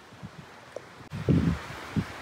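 Wind rustling the leaves and buffeting the phone's microphone, with a louder low rumble of wind or handling noise just after a second in.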